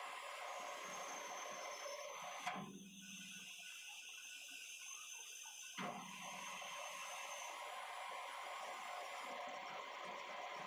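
Metal lathe running, spinning a driveshaft yoke in its chuck: a faint, steady machine hum. The sound changes abruptly twice, each time with a brief click, about two and a half and six seconds in.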